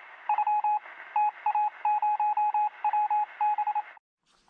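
Rapid electronic beeps on one steady high pitch, keyed on and off in quick irregular groups of short and longer beeps like Morse code, with a thin, band-limited sound.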